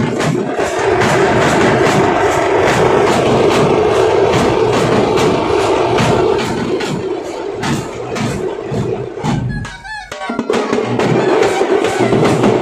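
Tamate street band: tamate frame drums and large bass drums beaten in a quick, steady rhythm, with a horn holding a sustained drone over them. The music thins out briefly about ten seconds in, then comes back at full strength.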